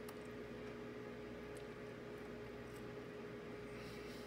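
Faint chewing of a smoky bacon Pringles chip: a few soft mouth clicks over a steady low hum.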